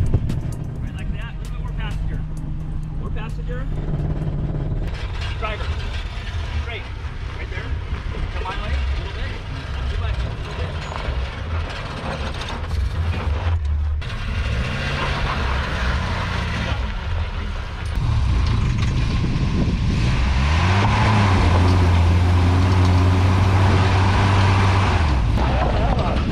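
Off-road 4x4 engines crawling over rock under load, revving up and down in low gear, with a long steady loud rev in the last few seconds.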